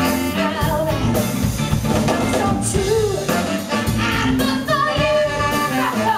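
A live soul band plays: a woman sings lead over drums, bass and electric guitar, with keyboard and a horn section in the band.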